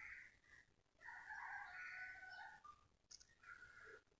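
Near silence broken by a faint, distant bird call nearly two seconds long, starting about a second in, with shorter faint calls at the start and near the end.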